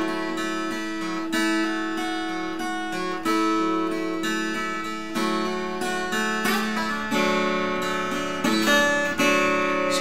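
Acoustic guitar in open D tuning, fingerpicked slowly: single plucked notes every second or two ringing over a steady drone of open strings, with a quicker run of notes a little past the middle.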